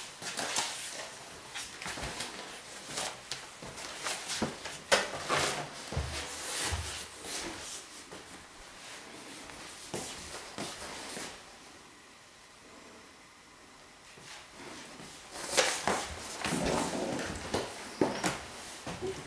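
Irregular knocks, clicks and rustling from someone walking through the rooms of a house with a handheld camera, with camera handling noise. The sound goes quieter about two-thirds of the way through, then a cluster of louder knocks comes near the end.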